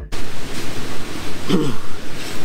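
Wind buffeting the microphone outdoors: a loud, gusting rush of noise. About one and a half seconds in there is a short pitched sound that falls in pitch.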